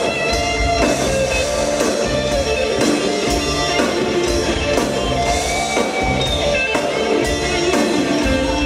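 A rock band playing live and amplified: electric guitar carrying the melody in sustained notes over bass guitar and a drum kit.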